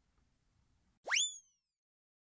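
A single short cartoon-style sound effect about a second in: a quick upward-sweeping whoop that levels off and fades within half a second. Otherwise near silence.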